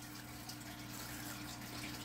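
Fish tank running in the background: a steady, faint water trickle from the aquarium's filter, with a constant low hum.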